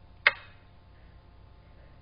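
A single sharp click about a quarter second in: the digital xiangqi board's piece-placement sound effect as a move is made.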